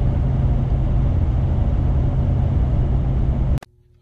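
Road and engine noise inside a moving car's cabin: a loud, steady low rumble with hiss above it, cutting off suddenly near the end.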